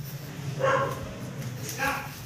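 Dogs barking: two barks about a second apart.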